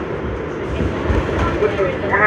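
R62A subway car running at speed through a station without stopping, with a steady rumble of wheels on rails.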